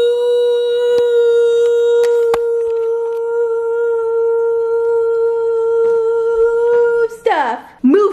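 A woman's voice holding one long, steady high "ooh" note that stops about seven seconds in, followed by a burst of speech.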